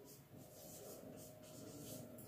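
Faint strokes of a marker pen on a whiteboard as a word is written out.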